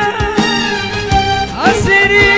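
Live Middle Eastern-style music between sung lines: a melody over a held low note and regular drum beats, with a note sliding upward near the end.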